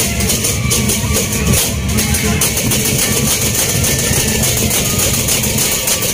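Sasak gendang beleq ensemble playing: large double-headed drums beaten under continuous, dense clashing of hand cymbals.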